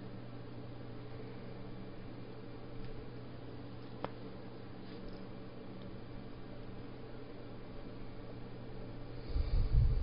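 Quiet room tone: a steady low hum with faint hiss. There is one brief faint click about four seconds in, and a short low muffled rumble near the end.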